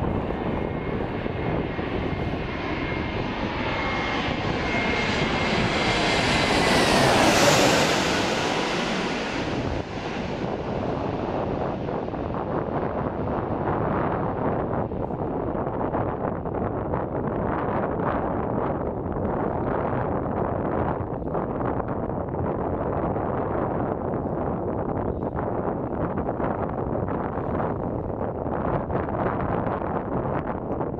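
Twin-engine jet airliner on final approach passing low overhead: the engine noise builds to a peak about seven seconds in, its high whine dropping in pitch as it goes by. A steady rushing rumble follows as the jet lands on the runway.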